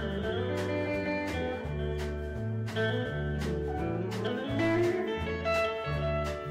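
Live country band playing an instrumental passage on electric guitars, bass and drums, with a steady drum beat and notes that bend and slide in pitch.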